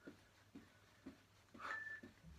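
Faint soft thuds about every half second, feet landing on a carpeted floor while jumping or jogging on the spot. Near the end comes a short high beep.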